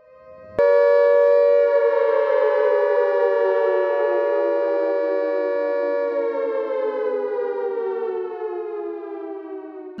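Air raid siren sounding. It starts abruptly about half a second in, holds a steady pitch for about a second, then slowly winds down in pitch and fades a little.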